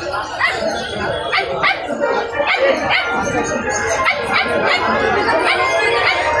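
Dogs barking in short, sharp calls repeated several times, with people talking in the background.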